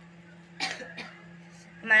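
A woman clearing her throat with a short cough about half a second in and a smaller one just after, before she starts speaking near the end.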